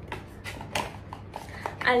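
A glass dropper bottle and its cardboard box being handled, making a few light clicks and taps, with a short word spoken at the very end.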